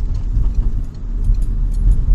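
Car engine and road noise heard from inside the cabin while driving through a right turn: a steady low rumble with a few faint light clicks.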